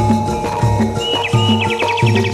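Javanese gamelan music: low hand-drum strokes with a falling pitch about every half second over struck bronze metallophones, with a high note held throughout. About halfway in, a rapid high trill joins the music.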